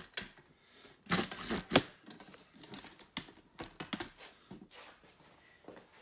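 A few light clicks and knocks, the two loudest a little after a second in, followed by scattered faint ticks.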